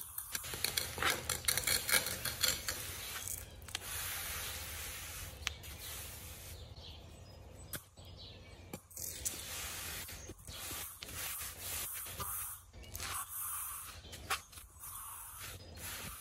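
Fine 70 mesh sand being poured from a metal scoop into a concrete floor crack and rubbed in by a gloved hand: a soft, uneven hiss with scattered small scrapes and clicks.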